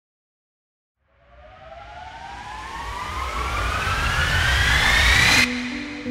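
A cinematic riser sound effect: rushing noise with a tone gliding steadily upward, swelling louder for about four seconds and then cutting off suddenly. A low, held music note takes over just before the end.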